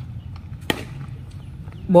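A cricket bat striking the ball once: a single sharp crack, the batsman's shot.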